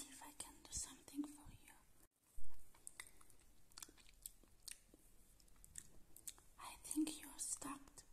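Close-microphone ASMR mouth sounds: clicks and wet smacks with soft whispering. A brief dropout about two seconds in is followed by a low thump, the loudest sound.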